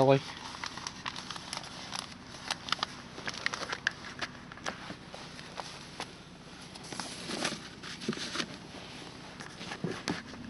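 Faint steady road noise inside a moving car, sprinkled with many small irregular clicks and crackles, typical of a hand-held camera being handled.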